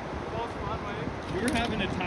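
Faint talking, words not made out, over a low steady rumble of outdoor noise, with a short sharp crack of dry reed stalk underfoot about one and a half seconds in.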